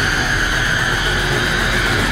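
A loud, harsh blast of horror-trailer sound design held steady: a dense roaring noise with a shrill high tone over a deep rumble.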